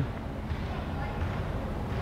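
Steady background noise with a low rumble and no distinct events: the room tone of a large indoor gym hall.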